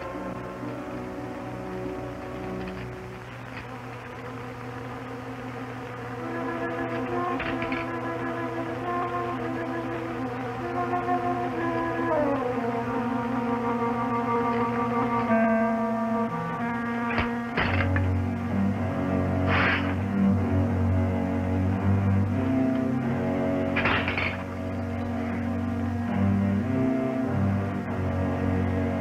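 Tense, suspenseful film-score music of held notes. About twelve seconds in there is a falling slide. Past halfway the music grows louder as a low bass comes in, with a few sharp accents.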